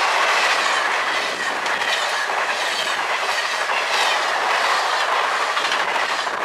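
Amtrak passenger train passing close at speed: a steady rush of wheels on rail with irregular clickety-clack over the joints and a faint high steady whine.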